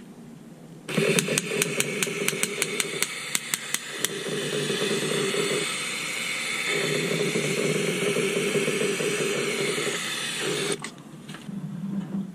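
Aerosol spray-paint can spraying: a steady hiss that starts suddenly about a second in and cuts off near the end. For the first few seconds it carries quick rattling clicks from the can's mixing ball.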